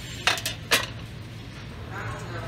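Dishes being handled: two short clinks about half a second apart, over a steady low hum.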